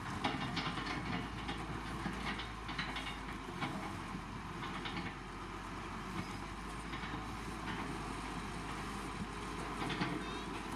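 LiuGong motor grader's diesel engine running steadily as the machine drives forward with its blade down through loose gravel road base, with irregular crunches and clatters of stones under the blade and tyres.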